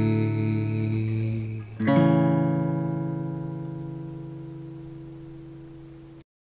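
Acoustic guitar playing a three-note major chord (root, major third and fifth on three adjacent strings). The chord rings, a new chord is struck about two seconds in, and it is left to ring out, fading slowly.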